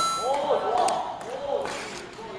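A short electronic chime sound effect ends just after the start, followed by faint voices in a large, echoing hall and a single sharp tap a little under a second in.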